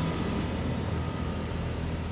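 Transition sound effect of a TV programme ident: a broad rushing whoosh over a low rumble, with a few held tones, slowly fading.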